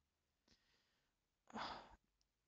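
Near silence, then about one and a half seconds in a man gives a short, breathy sigh.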